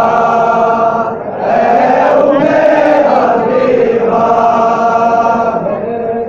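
Men's voices chanting a noha, a Shia mourning lament, in long drawn-out phrases with a short break about a second in.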